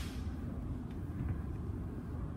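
Steady low rumble of a suburban electric train, heard from inside the passenger carriage, with a few faint ticks.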